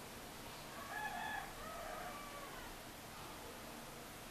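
A rooster crowing once, faint, starting about a second in and lasting about a second and a half, its pitch falling at the end, over a steady background hiss.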